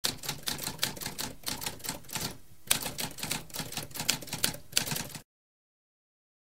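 Typewriter keys clacking in quick succession, about four or five strikes a second, with a brief pause about halfway through. The typing cuts off suddenly about five seconds in.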